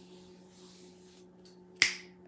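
A single sharp finger snap near the end, over a faint steady low hum.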